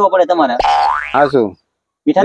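A cartoon-style comic sound effect: a rising, boing-like glide about half a second long, starting about half a second in.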